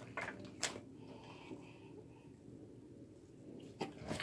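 Faint sticky clicks and squishes of slime being kneaded by hand with shaving cream worked in: a couple in the first second and one near the end, otherwise quiet.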